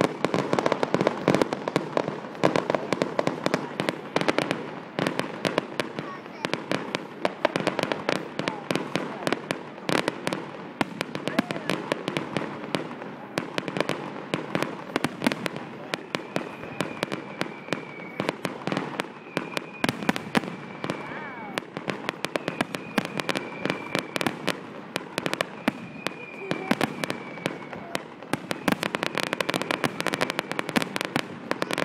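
Fireworks finale: a dense, continuous barrage of bangs and crackles. Several long, high, slightly falling whistles sound over it in the second half.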